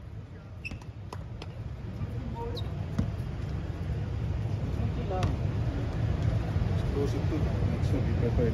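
Outdoor basketball court ambience: a steady low rumble under faint, scattered voices of players, with a few sharp clicks and short squeaks from the court.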